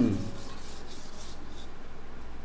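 A hand rubbing and working a bamboo flute tube, a soft, steady scraping.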